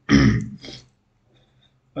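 A man clearing his throat: one sharp, loud burst, then a shorter, weaker second one.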